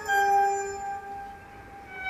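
Recorded classical orchestral music for a ballet variation: a held note sounds and fades away about a second in, a short hush follows, and the orchestra comes back in at the end.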